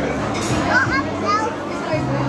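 Busy restaurant hubbub of many overlapping voices, with a young child's high-pitched voice calling out over it, starting about half a second in.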